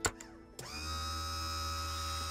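Cartoon sound effect: a button being pressed gives a click, and about half a second later a steady electric machine hum with a high whine starts up and holds, as a hidden laboratory is switched on.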